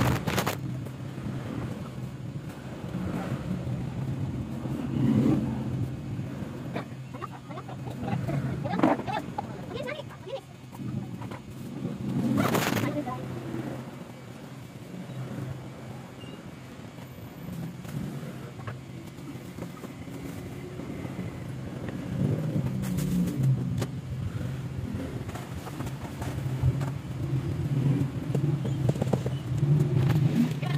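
Street-side shop ambience: traffic on the road outside and indistinct voices over a steady low hum, with rustling and knocks from handling, loudest about twelve seconds in.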